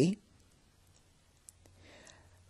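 The tail of a woman's spoken word, then a pause in her speech holding a single small click about one and a half seconds in and a faint breath near the end.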